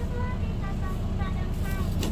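City bus engine idling, a steady low rumble heard from inside the passenger cabin, with faint talking over it.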